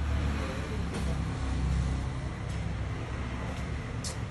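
Low rumble of road traffic, swelling over the first couple of seconds as a vehicle passes and then easing, over a steady background hum.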